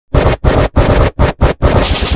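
Loud, harshly distorted effect-processed audio, a rough noisy sound chopped into short bursts about three times a second with brief silent gaps between them.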